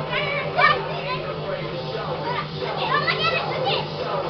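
Children's voices talking and calling out over music with a steady, evenly pulsing bass line.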